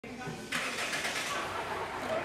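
Steady traffic noise with indistinct voices, setting in about half a second in.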